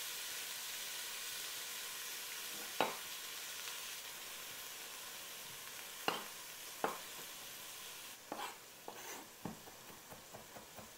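Chopped onions frying in olive oil in a Dutch oven, a steady sizzle. Over it a chef's knife cutting garlic knocks on a wooden cutting board: a few single knocks, then several quicker ones near the end.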